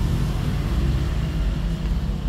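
Steady low mechanical rumble with a fast, even pulse, like an engine running.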